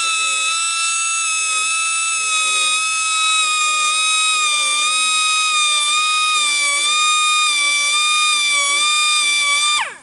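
Small high-speed grinder whining steadily as it grinds the teeth of a sawmill band blade, its pitch wavering slightly. Just before the end it is switched off and the whine falls away quickly in pitch.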